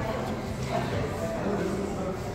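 Low background chatter of a group of people talking among themselves, with no single voice in front.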